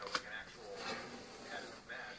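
Trading cards handled on a wooden desk: a card tapped down onto a pile with a short click just after the start, then faint rustling of cards being picked up and slid.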